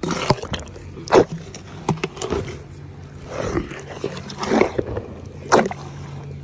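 An African elephant eating watermelon right at the microphone: a string of irregular chewing and crunching noises, the loudest about a second in and again just before the end.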